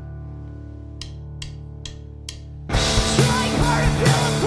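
Drummer's four stick clicks counting in, evenly spaced under a steady amplifier hum, then the full punk band of distorted electric guitar and drum kit comes in loud on the beat after the count, about three seconds in.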